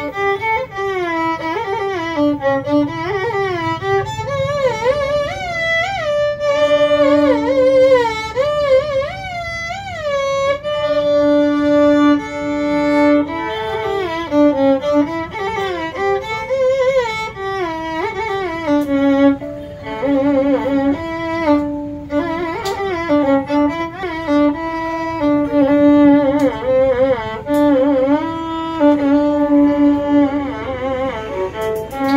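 Solo violin bowed continuously, playing a melody full of sliding, wavering ornaments, with a few long held notes.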